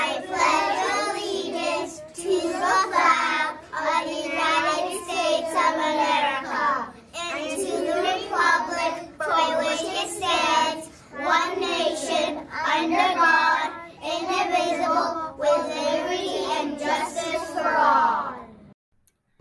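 A group of young children reciting the Pledge of Allegiance together in unison, in short phrases with brief pauses between them.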